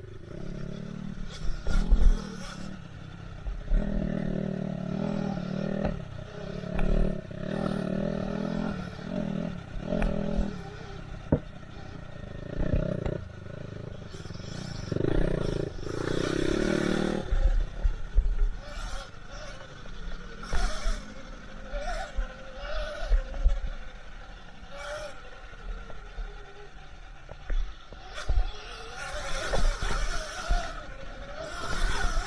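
Off-road motorcycle engine revving in repeated bursts for roughly the first half, then falling back. Short knocks and rattles of the bike over rough trail run through it.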